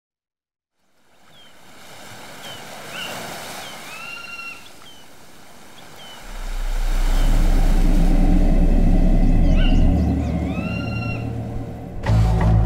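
Film-trailer sound design: after a second of silence, a soft ambient wash fades in with repeated short bird-like calls. About six seconds in, a deep low bass drone swells in and becomes the loudest sound, holding to the end.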